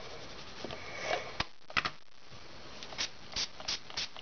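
Scattered light clicks and taps as plastic ink-pad cases and a clear acrylic smooshing sheet are handled on a tabletop, with a short sniff about a second in.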